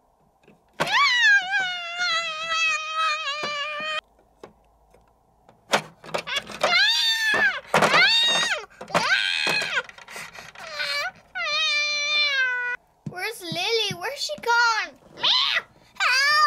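High, drawn-out cat meows and yowls: one long wavering call about a second in that stops abruptly, then a run of shorter rising-and-falling calls, a cat protesting at being put in a bath.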